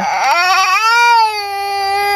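Infant crying in one long wail, rising in pitch over the first second and then holding steady.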